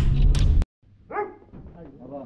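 Background music with a beat cuts off suddenly. About a second later comes one short animal call, then faint voices.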